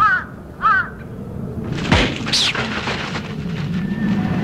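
Crow sound effect: two short caws in quick succession, followed about two seconds in by a sudden falling whoosh over a steady low background rumble.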